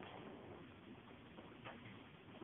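Near silence: faint meeting-room tone, with one faint click near the end.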